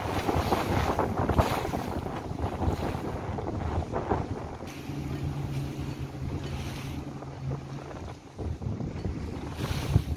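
Wind buffeting the microphone and sea water rushing and slapping around a rigid inflatable boat under way on choppy water. A steady low hum joins in from about five to eight seconds in.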